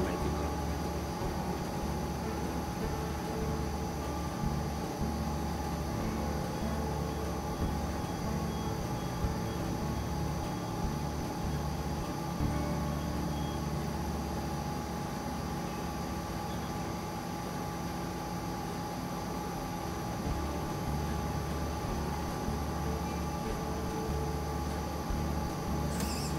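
Rubasse near-infrared drum coffee roaster running empty while it preheats and holds at its charge temperature: a steady mechanical hum with a constant hiss of air.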